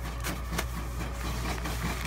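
Home embroidery machine running and stitching out a patch, a steady mechanical hum with fast, even needle clicking.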